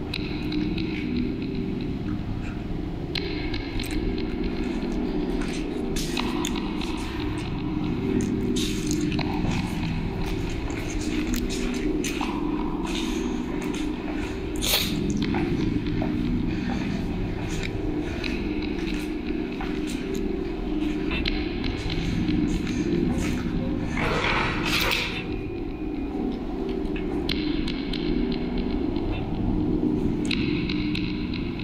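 A low steady rumble with scattered clicks, knocks and scrapes, and a longer scraping noise about twenty-four seconds in.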